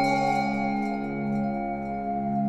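Meditation music: a struck, bell-like note rings and slowly fades over a sustained low drone that swells in slow pulses.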